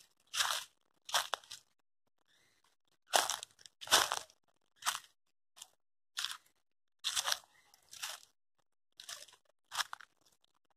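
Footsteps crunching through dry fallen leaves and twigs on a forest floor: about a dozen uneven steps, with a short pause about two seconds in.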